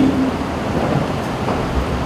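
Steady low rumble of background noise, with no clear event or rhythm in it.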